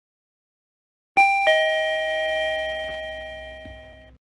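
Lift arrival chime: two tones, high then lower, struck about a third of a second apart about a second in, then ringing and fading out over about three seconds.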